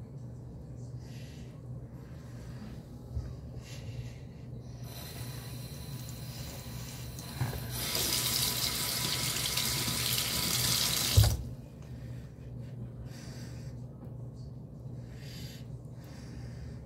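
Bathroom sink tap running: the water comes on about five seconds in, runs harder from about eight seconds, and is shut off suddenly with a knock about eleven seconds in.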